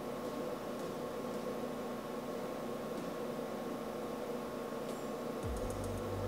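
Steady low hiss of room tone, with a faint constant tone and no clear events. A low hum comes in near the end.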